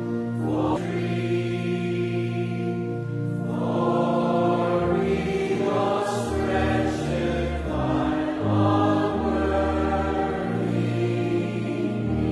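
Congregation singing a hymn in slow, long-held notes with organ accompaniment.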